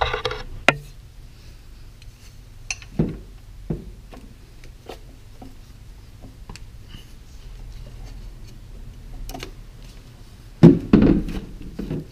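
Socket and long ratchet on the serpentine belt tensioner of a GM 3800 V6: scattered metallic clicks and knocks as the tool is fitted and worked, then a louder clatter about eleven seconds in as the tensioner is pulled back and the belt comes off.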